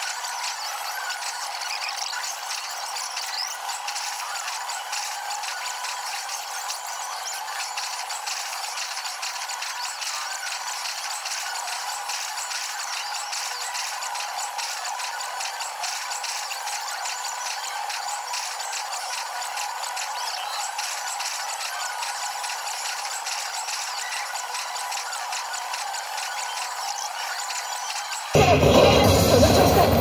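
Pachislot machine play sped up in a fast-forward: a steady, thin, rapid clatter with the low end cut away.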